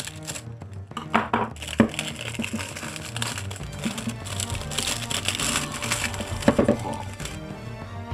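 Plastic wrapping crinkling as it is snipped with scissors and peeled off a handheld multimeter, with a few sharp clicks in the first two seconds and then a dense, continuous crackle that stops shortly before the end.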